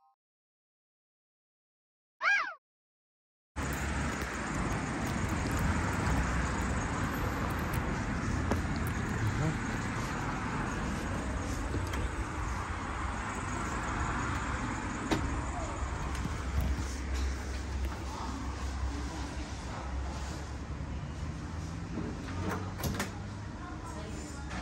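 Silence broken about two seconds in by a brief pitched swoosh effect, then steady background room noise with a low hum and a few faint clicks.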